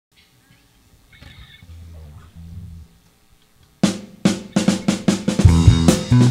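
A band's drum kit entering with a run of sharp snare and tom strikes about four seconds in, after a few seconds of faint low held notes. Loud low bass notes join under the drums near the end.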